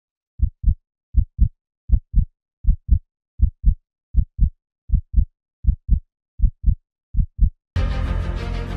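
Heartbeat sound effect: ten double low thumps, lub-dub, about 80 beats a minute with silence between. Near the end music cuts in loudly.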